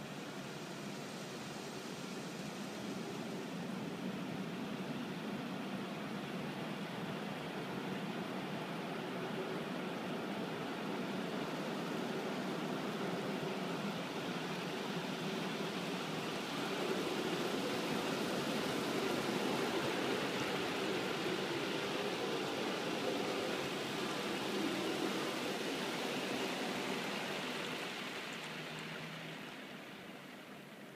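Automatic car wash spraying water over the car, heard from inside the cabin: a steady rushing hiss of spray on the roof and glass. It builds, is loudest past the middle, and eases off near the end.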